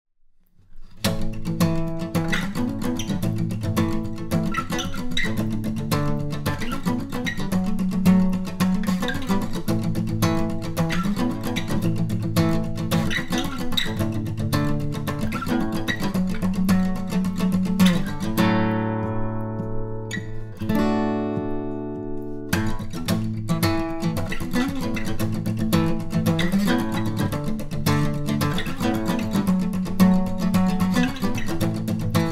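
Steel-string acoustic guitar played with a pick, starting about a second in: a driving, fast rhythm part arranged to mimic the song's bass line. About two-thirds of the way through, two chords are left to ring for a few seconds, then the driving rhythm resumes.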